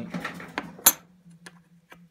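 Old metal coins being handled on a cloth, with a sharp clink about a second in as one coin knocks against another, followed by a couple of fainter ticks. A faint low hum sits underneath.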